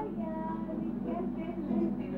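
A voice singing a few slow, held notes, quieter than the surrounding narration.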